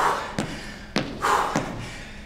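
A man breathing out hard after a set of barbell side lunges, with three sharp thuds about half a second apart, from his steps and the loaded bar on a wooden floor.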